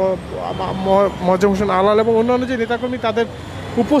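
Voices talking continuously over street traffic noise.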